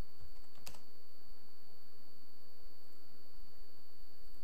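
Computer keyboard keystrokes: a few light taps, then one sharp click about 0.7 s in, as an AutoCAD command is entered. Under them runs a steady electrical hum with a high whine.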